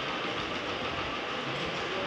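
Steady background room noise, an even hiss and hum with no distinct events.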